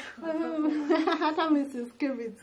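Speech only: a woman's voice talking, with no other sound standing out.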